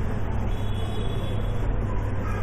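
Steady low hum with an even hiss underneath, with no one speaking.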